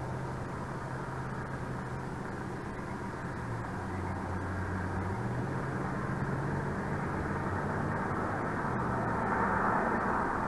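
Steady low drone of distant engine noise, with a low hum that shifts pitch now and then and swells slightly near the end.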